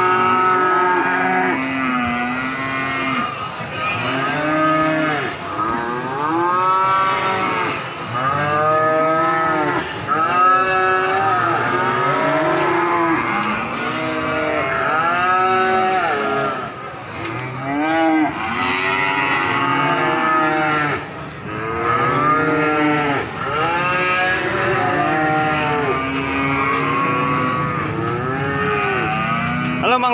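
Many cattle mooing over one another in a steady stream of calls, each call rising and then falling in pitch.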